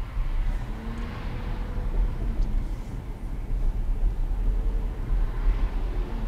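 Road and engine noise inside a moving car, picked up by a dashcam microphone: a steady low rumble.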